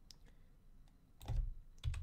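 Computer keyboard keystrokes: a few faint clicks, then a louder key press about a second and a half in, as selected code is deleted.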